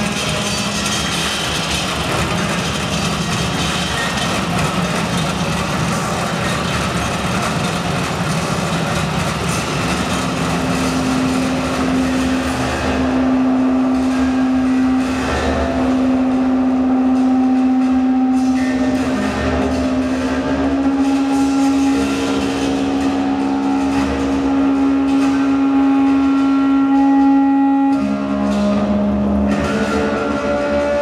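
Experimental electroacoustic sound art played live on home-made kinetic sound machines and electronics through a mixer. A dense, noisy mechanical texture gives way about ten seconds in to a steady low drone, with higher held tones layered above it. Near the end the drone drops to a lower pitch.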